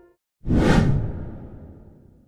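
A whoosh transition sound effect with a heavy low rumble, starting about half a second in and fading away over about a second and a half.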